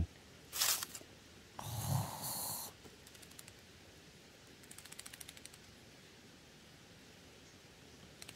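Korean pit viper hissing twice in short, breathy bursts, the second about a second long, with a man's short "어이" over its start. Faint ticking in dry leaves follows midway.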